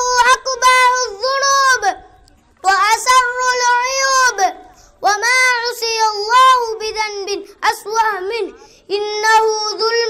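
A young boy declaiming an Arabic speech into a microphone in a high, chant-like voice. He speaks in phrases of one to two seconds with short pauses between them.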